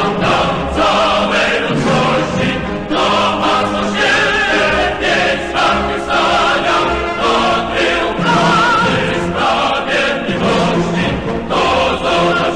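Choral music: a choir singing held, swelling notes over instrumental accompaniment.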